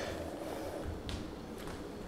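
Quiet room noise with faint handling as a plate is set down on a digital kitchen scale, and one soft tick about a second in.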